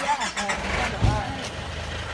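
A light truck's engine starting about a second in with a low thump, then running at a steady, evenly pulsing idle.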